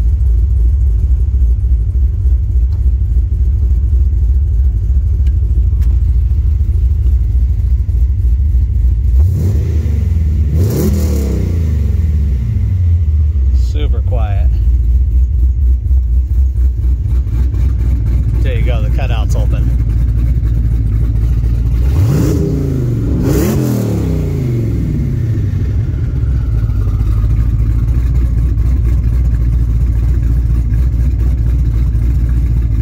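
Twin-turbo LS3 V8 idling with a steady deep rumble and revved twice, about ten seconds in and again a little past twenty seconds, each time rising and falling back to idle. Two short, higher-pitched glides come between the revs.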